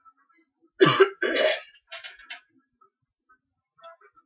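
A man coughing: two hard coughs in quick succession about a second in, followed by a few fainter throat-clearing noises.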